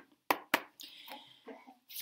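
A deck of tarot cards handled and shuffled by hand: two sharp card snaps, then a brief rustle of sliding cards and a few lighter clicks.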